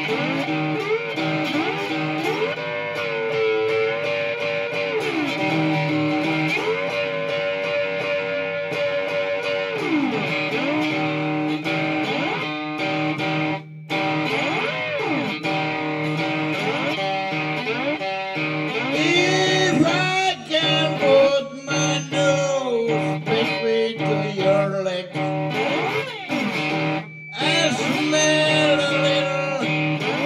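Blues instrumental break: guitar playing a lead line of bent, sliding notes over a steady low accompaniment.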